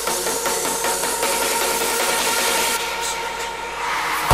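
Hardstyle dance music in a breakdown: the kick drum and bass are out, leaving sustained synth chords and a rising noise sweep building tension.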